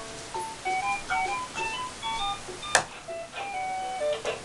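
Electronic baby toy laptop playing a simple beeping tune, one short note at a time, with a sharp knock nearly three seconds in.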